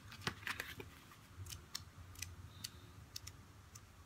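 Paper sticker-pad pages being handled and flipped: a string of soft, irregular ticks and crinkles, about a dozen in all.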